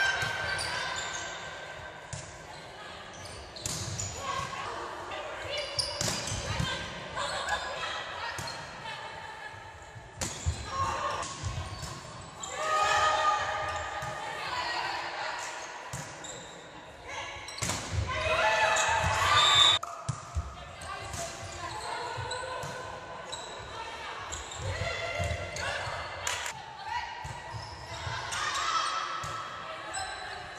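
Indoor volleyball being played in a large echoing sports hall: repeated sharp smacks of the ball being passed, set and hit, mixed with players calling and spectators shouting. Two louder bursts of shouting come about 13 and 18 seconds in.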